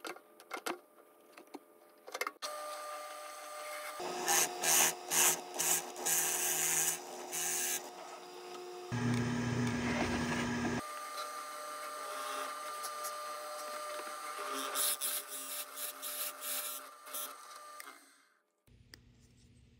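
Drill press running with a Forstner bit boring a round hinge-cup hole in plywood: a steady motor whine, broken by rough bursts of cutting as the bit is fed into the wood. A few clicks come before the motor starts, a couple of seconds in.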